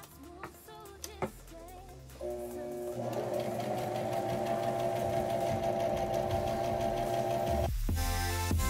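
Brother electric sewing machine stitching fabric. A few light clicks come first, then the machine starts about two seconds in and runs steadily at speed. It cuts off abruptly just before the end as loud music comes in.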